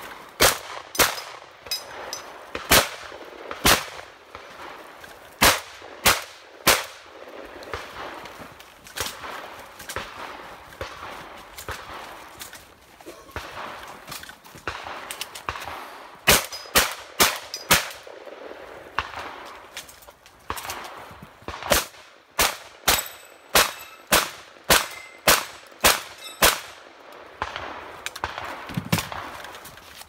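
Shotgun fired at steel targets in strings of shots: a few groups early on, a quick run of about six shots a little past the middle, then a long rapid run of about a dozen shots near the end, with quieter gaps between groups while the shooter moves and reloads.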